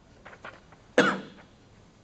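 A single loud cough about a second in, with a short quick fade, preceded by a few faint short sounds.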